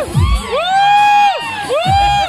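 Children shouting and cheering together, their voices rising and falling, over dance music with a deep bass-drum beat.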